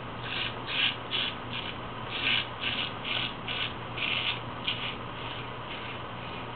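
A full-hollow straight razor, forged from 5160 leaf-spring steel, scraping through lathered stubble on the neck and cheek. It makes about a dozen short scraping strokes, roughly two a second, which grow fainter near the end.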